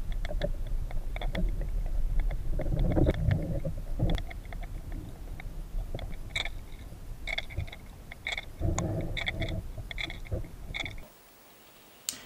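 Rattle of a Micro Jerkman jerkbait heard under water, clicking in short irregular runs as the lure is jerked, over a low steady underwater rumble that stops abruptly about a second before the end.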